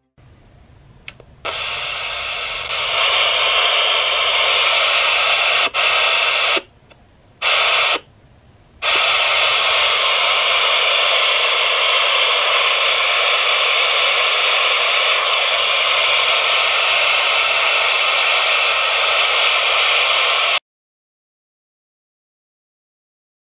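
Realistic TRC-214 CB walkie-talkie switched on, its speaker hissing with loud receiver static. The hiss steps up about three seconds in and drops out briefly three times between about six and nine seconds. It then runs steadily until it cuts off suddenly about a second before the end.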